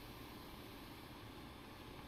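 Near silence: faint, steady background hiss of room tone in a pause between speech.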